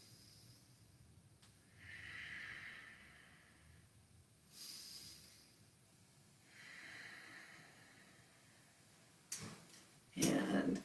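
A person breathing slowly, faint and close: three soft breaths about two, five and seven seconds in, timed to a paced inhale-exhale exercise.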